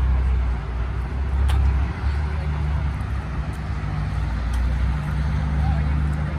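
A car engine running at a steady idle, a continuous low rumble.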